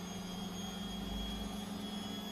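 A pause with no calls: only a steady low hum and a faint high-pitched whine, with a slight low rumble about a second in.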